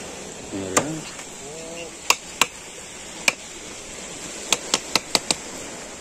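A string of about nine sharp clicks or knocks at irregular spacing, bunching together in the second half, over a steady background hiss. A short, wordless human voice sound comes twice in the first two seconds.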